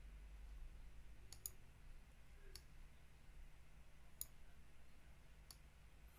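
Faint computer mouse clicks, a handful spaced over a few seconds, two in quick succession, over a low steady hum.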